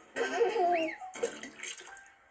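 Cartoon water-splash sound effect in two bursts, with a short wavering, gliding vocal-like sound over the first, played through a TV speaker.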